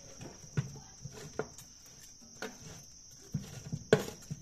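Metal tongs clinking and tapping against a metal roasting tray as chicken and potatoes are turned: a few sharp clicks spread out, with a quick cluster near the end.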